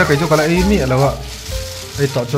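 Aluminium foil crinkling as hands fold and tuck it around food. A person's voice sounds over it for about the first second.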